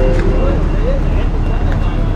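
Busy street ambience: a steady rumble of road traffic, with voices of passersby near the start.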